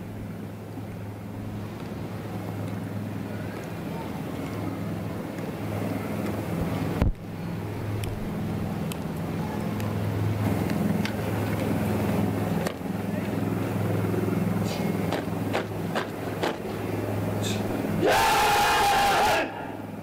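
Parade-ground ambience of a steady low hum and crowd noise, with a sharp knock about seven seconds in and a few clicks later. Near the end comes a loud, drawn-out shouted word of drill command, held for over a second.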